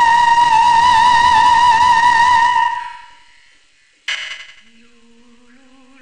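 Operatic soprano singing a long high vowel near the top of her range, the vibrato widening after about a second, then fading out about three seconds in. After a brief sharp sound near four seconds, a quieter low sung note starts and climbs slowly in small steps, the start of a scale.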